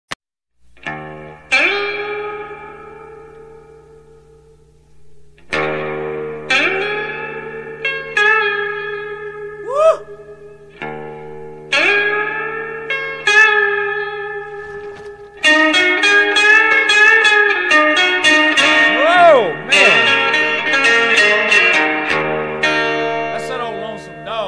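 Blues instrumental intro on guitar: single plucked notes and chords left to ring and fade, some bent upward in pitch. About 15 seconds in it turns into busier continuous playing with more bends.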